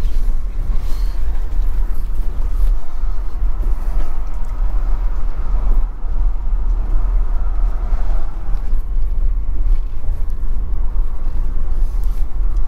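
Steady low rumble of road and tyre noise inside the cabin of a Tesla Model Y electric car driving slowly up a steep, narrow street.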